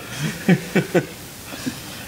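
A man chuckling: a few short laughs in the first second, then quiet room tone.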